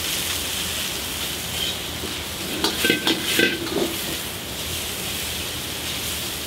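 Beef slices sizzling in a hot wok while being stir-fried with a metal ladle. A quick run of scrapes and knocks of the ladle against the wok comes in the middle.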